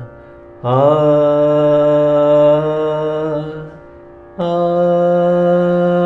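A man singing long held notes in Carnatic style: the first swoops up into pitch just after the start and holds for about three seconds, then after a short break a second, slightly higher note is held steadily.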